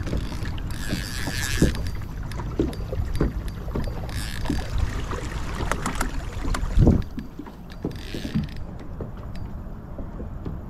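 Kayak on open water: water washing and lapping at the hull in bursts every few seconds, with scattered knocks and clicks from the paddle and gear against the boat. A heavy thump comes about seven seconds in, after which the low rumble under it drops away.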